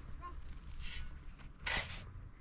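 Shovel blade scraping into a pile of sand, twice: a softer scoop a little under a second in and a louder one near the end.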